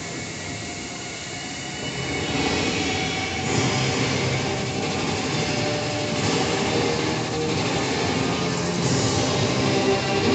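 Dancing fountain's water jets and spray rushing, swelling about two seconds in and then holding strongly. Faint show music runs underneath.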